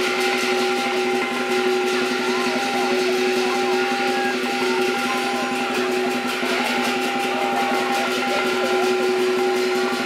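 Southern lion dance band playing: the big lion drum beaten in rapid, steady strokes with cymbals and gong ringing over it.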